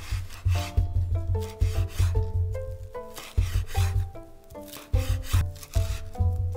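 Chef's knife slicing a stack of sesame (perilla) leaves into thin strips on a wooden cutting board, repeated cutting strokes roughly two a second, each landing with a tap on the board. Background music plays throughout.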